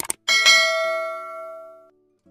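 Subscribe-button sound effect: a quick double mouse click, then a notification bell ding that rings and fades over about a second and a half before cutting off.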